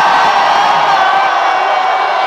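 A crowd cheering and whooping over a dubstep DJ set, loud and steady, with no words in it. The phone's recording is overloaded by the bass, so the sound is harsh and the deep bass is almost missing.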